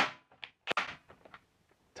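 A Ryobi HP half-inch cordless impact wrench stops hammering abruptly at the very start, having just driven a lag screw home. Then a few faint clicks and one sharp knock follow as the wrench and socket are lifted and handled.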